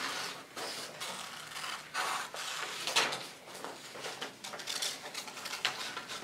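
Sheets of brown construction paper rustling and crinkling as they are handled, with scissors snipping through the paper. The sound comes as irregular bursts, the sharpest about three seconds in.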